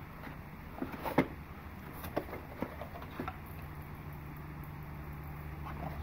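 Gloved hands handling small cardboard model-train kit boxes in a carton: a few light knocks and scrapes. A steady low hum runs underneath.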